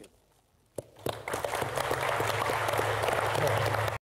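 Audience applauding. The clapping starts about a second in after a short quiet and stays loud and even.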